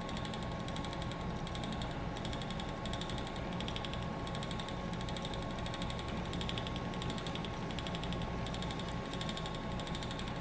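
Ashford Elizabeth 2 spinning wheel running under steady treadling while yarn is spun onto the bobbin: a steady wooden whir with a fine, rapid clatter that comes in regular pulses.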